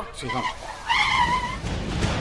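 Radio-drama sound effect of a car: a short pitched tyre or brake squeal about a second in, then engine and road rumble building toward the end.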